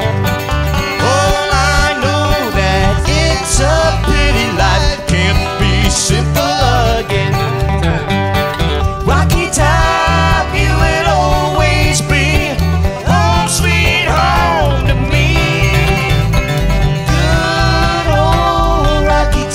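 Live bluegrass band playing an instrumental break: acoustic guitars and banjo picking over a steady upright bass beat, with a lead line bending above them.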